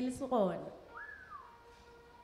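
A woman's voice trails off with a falling pitch. About a second in comes a short, thin whistle-like note that rises briefly, glides down and fades into a faint held tone.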